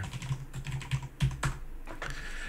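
Typing on a computer keyboard: a quick, irregular run of key clicks as a short chat message is entered.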